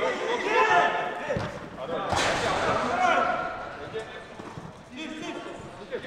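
Footballers shouting to each other across an indoor pitch, their voices echoing in the big hall, with ball kicks thudding; the sharpest kick comes about two seconds in.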